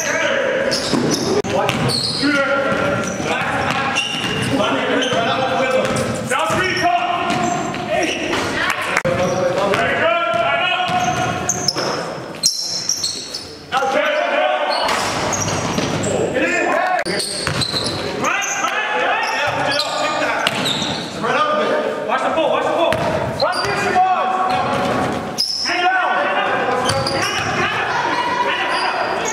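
Indoor basketball game: the ball bouncing on the gym floor, sneakers squeaking and players calling out, echoing in a large gym. The sound dips briefly about halfway through.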